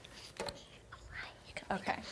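Quiet whispered speech with a few soft clicks and handling noises, then a spoken 'okay' near the end.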